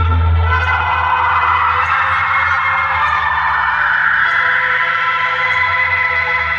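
Loud music playing through a tall stack of horn loudspeakers on a DJ sound rig under test, with heavy bass that eases off about a second in under sustained higher tones.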